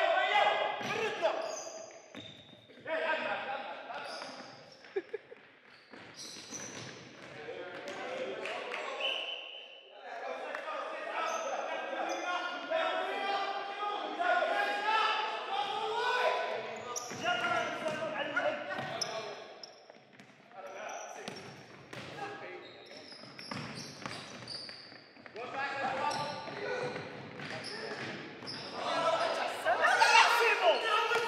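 Futsal ball being kicked and bouncing on a wooden sports-hall floor, with players calling out to each other, all echoing in a large hall. One kick stands out sharply about five seconds in.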